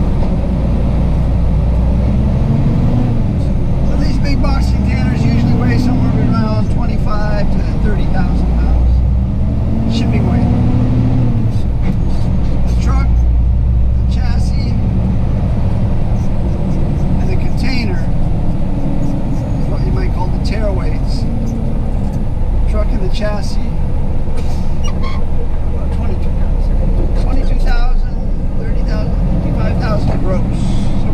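Truck's diesel engine running steadily as a low rumble, heard from inside the cab.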